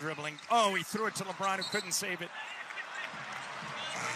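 Background basketball broadcast at low level: a commentator's voice for about two seconds, then arena noise with a basketball being dribbled on the court.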